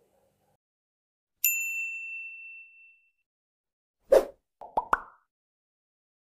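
Sound effects of a subscribe-button animation. A bright bell-like ding about a second and a half in rings out for about a second and a half, then a pop about four seconds in is followed by a few quick clicks.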